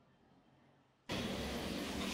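Near silence for about a second, then a steady background hiss of room tone cuts in abruptly and holds.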